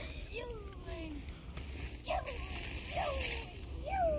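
Children's voices making short, wordless calls that fall in pitch, four of them, over a steady low rumble.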